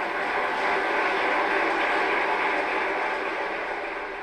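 A large audience applauding steadily, the clapping beginning to die away near the end.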